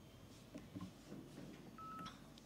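Near silence: faint room tone, with one short single-pitched electronic beep near the end.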